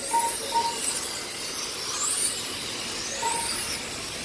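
Radio-control touring cars' electric motors whining high, the pitch rising and falling as the cars speed up and slow through the corners, with a few short beeps.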